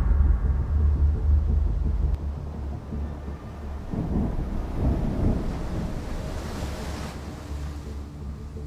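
Ocean surf: a deep, steady rumble of waves, with a hissing wash that swells between about four and seven seconds in and then eases off.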